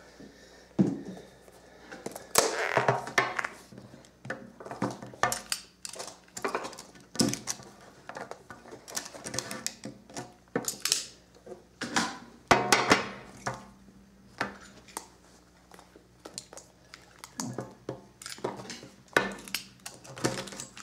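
Sealed cardboard card boxes being cut open and handled: a box cutter slitting the seal and wrapping, amid irregular clicks, scrapes, rustling and light knocks of boxes on a glass tabletop.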